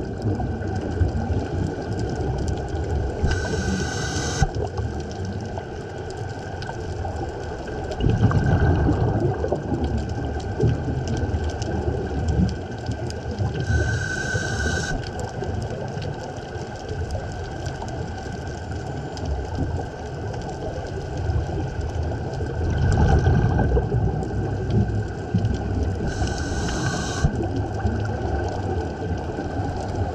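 Underwater sound of a scuba diver's breathing: a steady low rumble of water, with a short regulator hiss about every eleven seconds (three times) and louder rumbling surges of exhaled bubbles in between.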